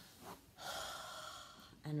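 A woman's long, audible breath, held for about a second and fading, as she strains to hold her legs tensed in a muscle-squeeze exercise; her voice comes back near the end.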